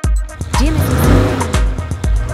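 Electronic music with a steady beat, with a car engine revving sound effect laid over it starting about half a second in. The effect rises and falls in pitch.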